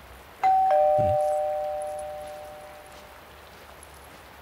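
Two-tone doorbell chime: a higher ding, then a lower dong a quarter second later, both ringing on and fading away over about two and a half seconds.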